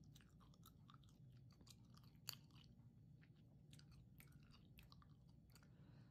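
Gum being chewed close to the microphone: faint, irregular clicks and smacks, with one sharper click a little over two seconds in.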